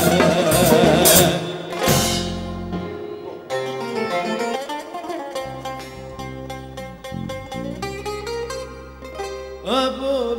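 Live Greek folk band: about two seconds of full band with male singing and drums, then a bouzouki carries on alone with a plucked melody. Just before the end a male voice starts singing again.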